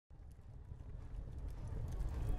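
A low rumbling sound effect fading in from silence and growing steadily louder, with faint scattered crackles above it.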